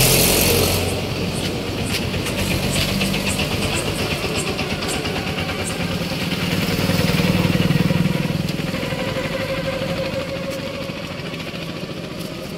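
A motor vehicle engine running nearby, steady, swelling louder about seven to eight seconds in and then easing off.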